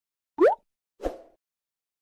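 Two short cartoon-style sound effects of a logo animation: a quick rising 'bloop' about half a second in, then a softer thud that dies away within a few tenths of a second, about a second in.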